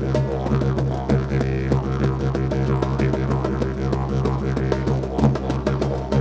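Didgeridoo (a Duende 'The Toad') holding a steady, rhythmic low drone, with hand drums struck in a quick, even pattern over it.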